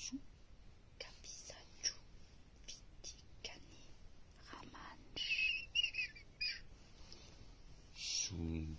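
Close-up whispering in unintelligible gibberish, a series of short breathy hisses and mouth sounds, with a few brief high squeaky vocal sounds about five seconds in.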